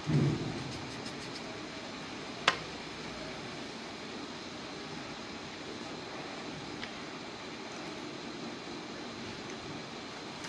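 Steady background noise with no clear pattern. A low thump comes right at the start, and a single sharp click about two and a half seconds in.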